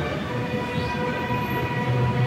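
Acoustic guitar and keyboard holding a chord that rings on steadily. A deeper low note comes in about two-thirds of the way through.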